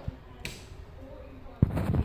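A sharp click about half a second in, then a louder knock and rattle around a second and a half in, as a light switch is fumbled for and pressed.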